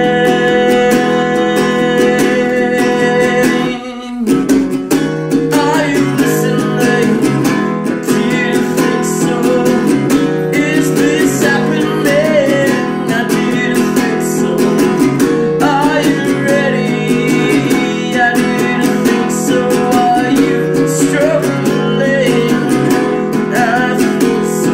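A song on a Gretsch Jim Dandy acoustic guitar: steady strumming with singing over it. The playing drops out briefly about four seconds in, then the strumming starts again.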